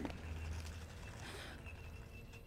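Faint soundtrack ambience: a low steady hum that fades in the first second, then a thin, high, steady tone that comes in past the middle.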